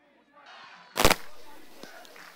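One loud, sharp knock about a second in, fading quickly, over faint crowd voices. The sound drops out completely for the first moment.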